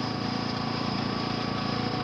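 Steady mechanical drone, like a small engine or machinery running continuously, with a fine rapid pulse low down and a faint steady whine above it.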